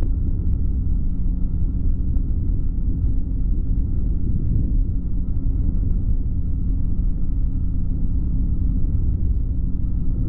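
Flexwing microlight's engine and the airflow around it, a steady low drone in flight on the approach to land, with a faint steady whine above it.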